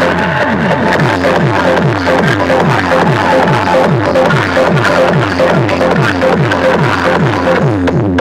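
Electronic DJ music blasted very loud through a large rack of horn loudspeakers, built on a falling bass sweep that repeats about three times a second under a steady pulsing beep.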